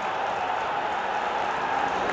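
Steady football-stadium crowd noise just after a goal, the away supporters celebrating.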